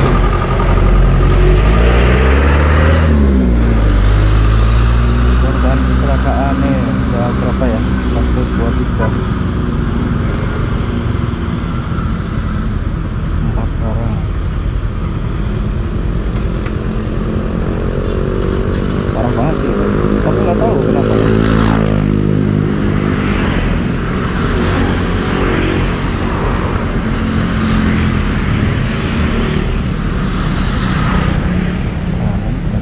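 Yamaha Mio M3 scooter's small single-cylinder engine running while riding in traffic. Its pitch rises as it accelerates, in the first few seconds and again past the middle.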